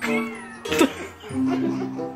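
A toddler's high, excited squeals: one falling in pitch at the start and a short sharp one just under a second in, over background music.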